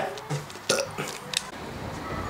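A person's short vocal sounds without words, the longest just under a second in, followed by two small clicks.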